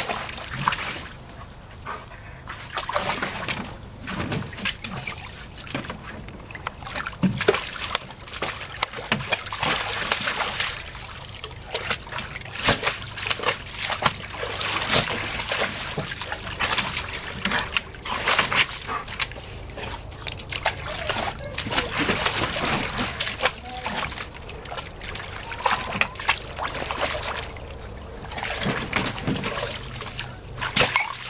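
Dog pawing and splashing in the water of a plastic kiddie pool: irregular splashes and sloshing.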